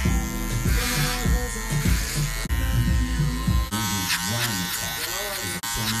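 Electric hair clippers buzzing steadily as they cut the hair at the back of the neck, mixed under music with a heavy beat that gives way to a voice a little past halfway.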